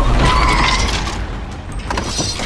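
Car sound effect: tyres squealing as a car skids to a stop over a low engine rumble, the squeal lasting under a second and the whole sound fading out.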